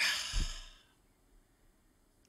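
A person's breathy sigh, a little under a second long.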